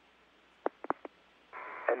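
Space-to-ground radio loop between transmissions: a faint open-channel hiss, four short clicks a little over half a second in, then a louder hiss as the channel keys up about a second and a half in, just before the shuttle crew's reply.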